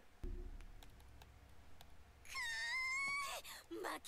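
A single high, drawn-out wail lasting about a second, rising slightly in pitch, from the anime episode's audio, with a voice starting just after it.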